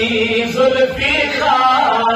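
A man's voice chanting a Kashmiri naat in long held notes, with a bend in pitch about a second in.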